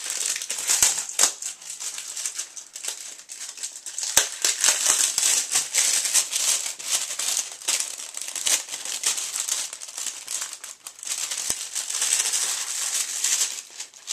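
Plastic packaging crinkling and rustling with many sharp crackles as a VHS tape is unwrapped by hand. It dies down at the very end.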